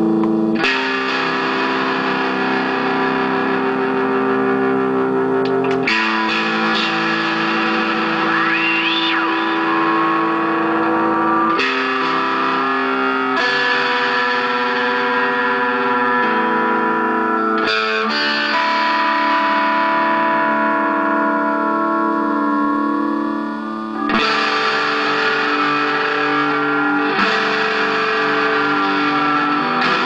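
Electric guitar played through a Moog MF-102 ring modulator pedal: held chords that change every few seconds, with tones gliding up and down in pitch in places.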